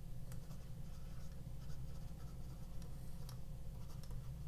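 Faint scratches and taps of a stylus writing on a tablet screen, over a steady low hum.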